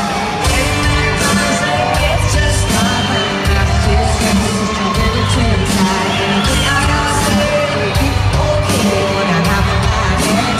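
Live country-pop band playing in an arena, with drums and bass under a woman singing lead, heard from within the crowd with scattered cheers and whoops.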